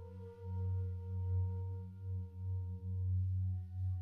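Meditation background music of sustained singing-bowl tones over a low, wavering drone. The higher ringing tones die away over the first three seconds and fresh ones sound near the end.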